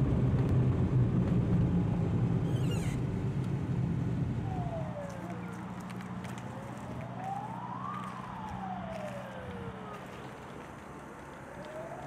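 A car's engine and road noise drone steadily for the first few seconds, then a police car siren wails slowly, its pitch rising and falling about every two and a half seconds.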